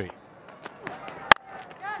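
A single sharp crack of a cricket bat hitting the ball, just over a second in, over faint stadium crowd noise.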